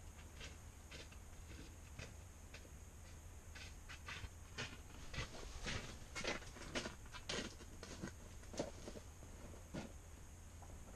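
Faint rustling and scattered short clicks, busiest in the middle seconds, over a low steady hum.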